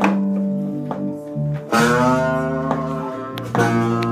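Acoustic guitar and bass guitar playing an instrumental passage: chords struck about every second and three quarters and left to ring and fade, over held bass notes.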